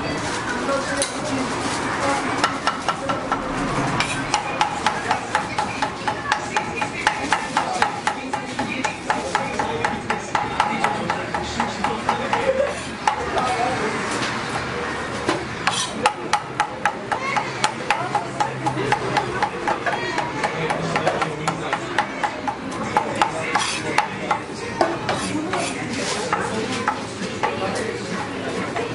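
Large kitchen knife chopping meat on a wooden cutting board: quick repeated knocks, a few a second, with a short break about halfway through.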